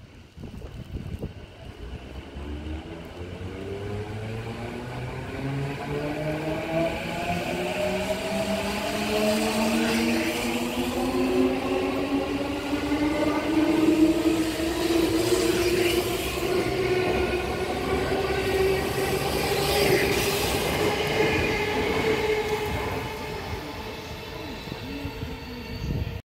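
JR East E233 series 2000-subseries electric commuter train pulling away and accelerating past: its VVVF inverter traction motors whine in a pitch that rises for about the first half and then levels off, over the rumble of wheels on rail. The sound grows loudest midway and eases off near the end as the train leaves.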